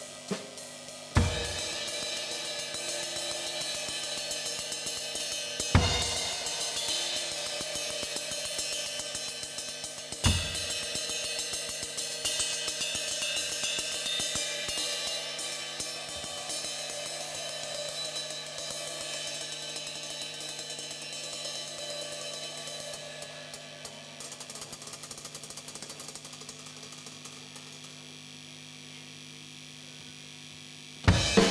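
Drum kit solo: three heavy accented hits about four to five seconds apart, over continuous cymbal and hi-hat playing that slowly fades and grows quieter toward the end.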